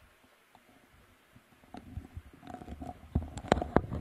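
Near silence for about two seconds, then a run of sharp knocks and low rumbling thumps, loudest a little past three seconds in.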